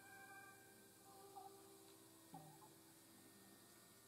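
Near silence: faint room tone with a few faint steady tones and two small soft sounds, one about a third of the way in and one just past halfway.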